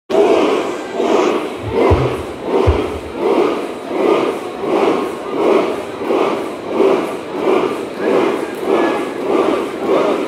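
Concert audience chanting in a steady rhythm, one loud shout about every three-quarters of a second, with two short deep thumps around two seconds in.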